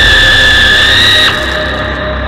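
Loud, shrill high-pitched tone from a thriller trailer's score, sliding up into a held note over a low drone and cutting off suddenly about a second and a half in. The low drone and a quieter steady tone carry on after it.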